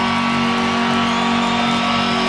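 Electric guitars holding a final chord at the end of a live rock song, steady and unbroken, after the drums have stopped. Crowd noise runs underneath.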